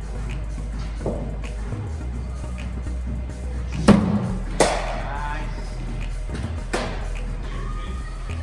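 A bowling-machine delivery played by a batsman in the nets: a dull thud of the ball about four seconds in, a sharp crack of bat on ball well under a second later, and another sharp knock of the ball about two seconds after that. Steady background music runs underneath.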